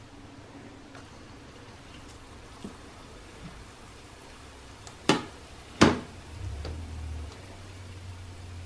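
Beetroot dough balls deep-frying in hot oil in a pan, with a faint steady sizzle. Two sharp knocks, about five and six seconds in, are the loudest sounds, and a low hum sets in just after.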